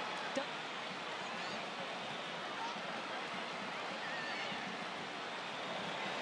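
Steady field ambience from a soccer broadcast: an even hiss of open-air stadium atmosphere with faint, distant shouts from the players. There is a single knock about half a second in, such as a ball being kicked.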